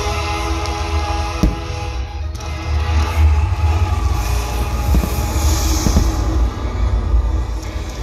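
Fireworks show music played over loudspeakers, with fireworks going off during it: a sharp bang about one and a half seconds in and a couple of fainter pops later. A constant deep rumble runs underneath.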